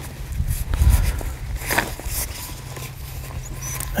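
Soft handling noise of black plastic drip-irrigation tubing being bent back on itself and worked into a figure-eight end cap: faint rubs and a few light clicks, with a low rumble about a second in and a faint steady low hum underneath.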